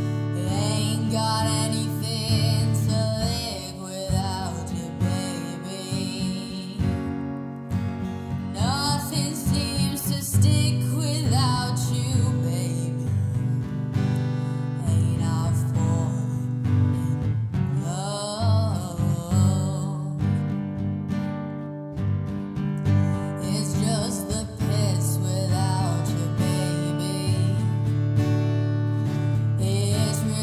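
A woman singing a slow ballad in sung phrases over strummed acoustic guitar accompaniment.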